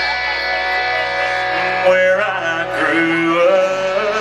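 Live country band playing through a big concert sound system, recorded from the crowd: long held notes with vibrato over guitar, at a steady loud level.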